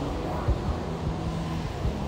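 A steady, low mechanical hum with a faint held tone and no distinct events.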